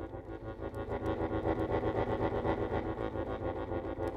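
Solo accordion playing fast, evenly pulsed repeated chords in the middle register over a steady held bass, about seven pulses a second.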